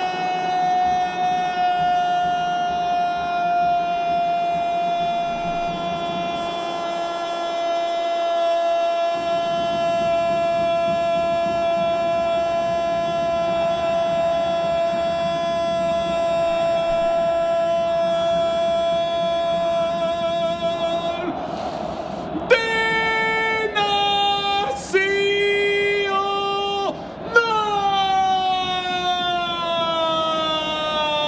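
A football commentator's long, held 'gooool' shout on one steady pitch for about twenty seconds, celebrating a goal. Near the end it breaks into a few short shouted syllables at changing pitch, then another long held note that slowly sinks.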